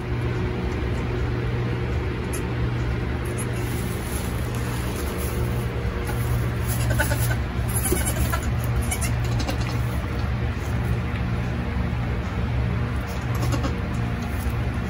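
Nigerian Dwarf goats, a doe with her newborn kids, bleating a few times around the middle, over a steady low hum.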